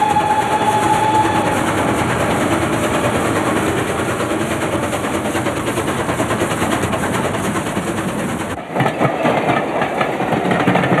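Steam train running at speed, No. 7819, a GWR Manor-class 4-6-0 locomotive: a steady, loud rush of engine and wheel noise. It dips briefly near the end, then carries on.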